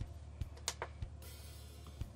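A few sharp computer clicks, about five in the first second, from a mouse and keyboard working the software, over a faint low hum; a soft hiss comes in a little past halfway.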